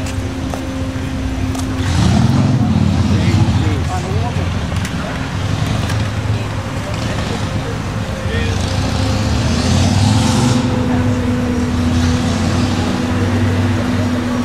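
Street traffic: a steady engine hum runs throughout, and vehicles pass twice, loudest about two seconds in and again about nine seconds in.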